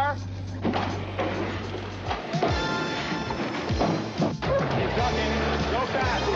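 Background music with a sustained low bass, and brief voices of crew calling out.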